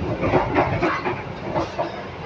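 Interior running noise of the Argo Parahyangan passenger train in motion: a steady low rumble of the stainless-steel carriage with irregular rattles and clacks from the wheels and car body.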